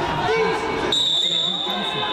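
Chatter of voices in a large hall. About a second in, a steady high-pitched tone starts abruptly and holds for about a second.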